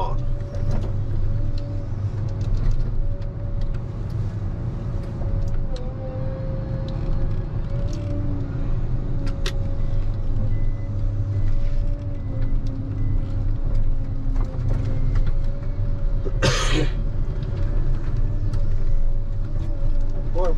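Ponsse Scorpion King forest harvester's diesel engine running steadily, heard from inside the cab, with a steady hydraulic whine over the drone. About three-quarters of the way through there is a brief loud burst of noise as the H7 head fells the tree.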